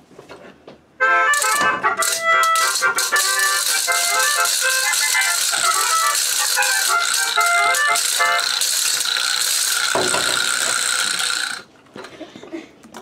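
A melodica playing a quick tune of short notes, with hand shakers rattling all through it. It starts about a second in, ends on a long held note, and cuts off sharply just before the end.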